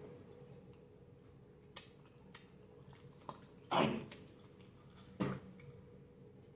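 Close-up mouth sounds of chewing fried chicken wing: a few faint clicks, with two louder wet smacks about four seconds in and about five seconds in.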